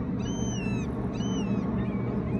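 A bird calling repeatedly: three high calls, each rising and then falling, about a second apart, over a steady low rushing noise.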